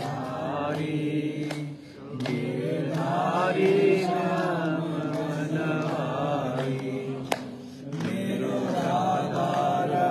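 Devotional chanting by voices in long, held, melodic phrases, broken by short pauses about two seconds in and again near eight seconds. There is a single sharp click just before the second pause.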